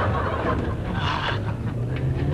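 Car engine and road noise heard inside the cabin of a Nissan Almera on the move, a steady low hum.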